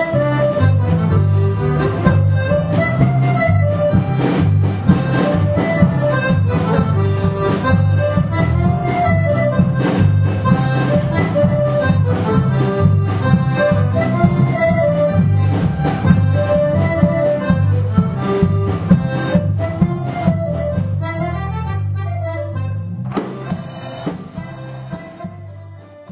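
Accordion playing a lively traditional folk dance tune over a steady alternating bass, with sharp beats throughout. The music fades away over the last few seconds.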